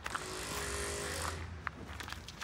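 A vehicle passing on the road alongside, a steady rush of tyre and engine noise that fades out about one and a half seconds in. A low rumble runs under it, and a couple of light taps follow near the end.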